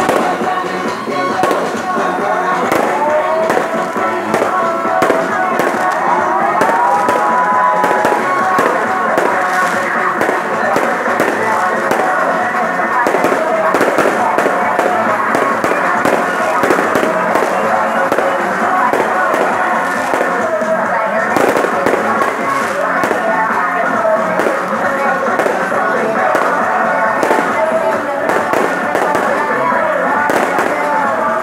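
Strings of firecrackers crackling without a break, over loud music with a melody played through a sound system.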